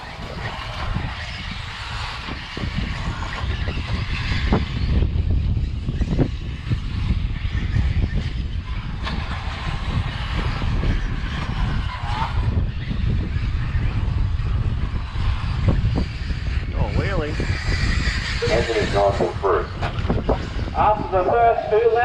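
Wind buffeting the microphone outdoors, a steady low rumble with gusting swells, and a voice over it near the end.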